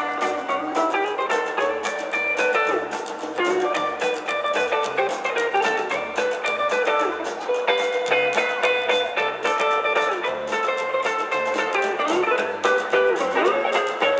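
Live rockabilly band playing an instrumental break: a lead guitar runs quick single notes over strummed acoustic guitar, a walking upright bass and drums.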